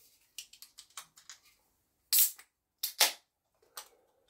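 A beer can being opened: a few light handling clicks, then the ring-pull cracking open with a short, loud hiss of escaping gas about two seconds in and a second sharp crack-hiss about a second later.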